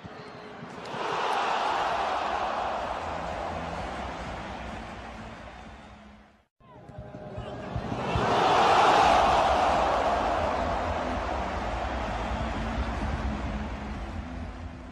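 Stadium crowd cheering a goal: the roar swells up about a second in and slowly fades. After a sudden break about halfway, a second cheer swells up and slowly fades.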